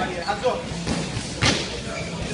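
A punch from a boxing glove landing during sparring: one sharp thud about one and a half seconds in, with a lighter knock earlier, over voices in a large gym room.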